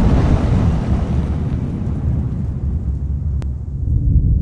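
A designed fireball explosion sound effect: a whooshing swell that bursts at the start, then a deep rumble that slowly dies away, with a single sharp click about three and a half seconds in.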